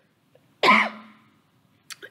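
A person clears their throat with one sharp cough about half a second in. It starts suddenly and trails off into a brief voiced hum. A short click-like sound follows near the end.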